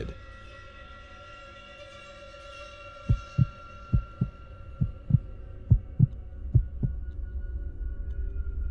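Sustained ambient music with held steady tones, joined about three seconds in by a heartbeat sound effect: five low double thumps in a lub-dub rhythm, a little under a second apart, stopping near the end.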